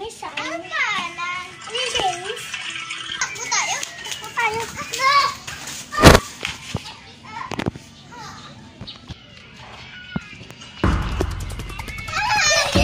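Young children talking and squealing excitedly, with a sharp knock about six seconds in and music starting near the end.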